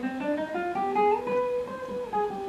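Classical guitar playing a scale, single plucked notes rising step by step and turning back down near the end.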